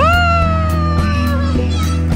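Background music with a steady bass line. Over it comes one long, high, voice-like cry that swoops up sharply at the start and slowly sinks, lasting about a second and a half.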